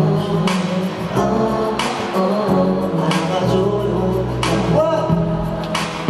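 Live pop music from a concert sound system, with a male voice singing over a backing band. Sustained bass notes, and a cymbal-like hit roughly every second and a half.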